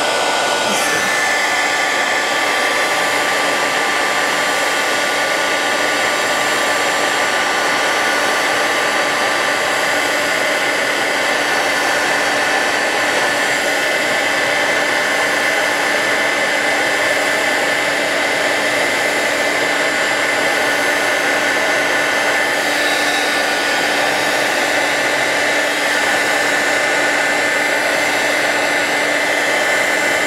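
Handheld craft heat tool blowing steadily, a rush of air over a steady motor whine, as it dries wet watercolor paint on a card panel.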